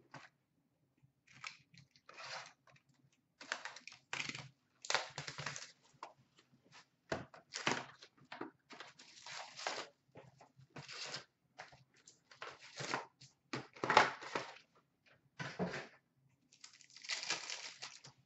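Trading card pack wrappers being torn open and crinkled, with cards handled between the tears: a run of short, irregular ripping and rustling sounds.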